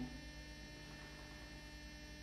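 Faint, steady electrical mains hum, with no other sound.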